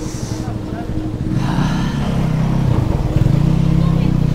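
Motorcycle engine running, with a low steady pulsing that grows louder about a second and a half in and again near the three-second mark.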